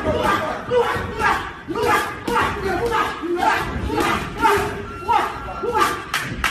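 Several people shouting and yelling over one another, with loud rising and falling cries coming every second or so, around a boxing sparring match.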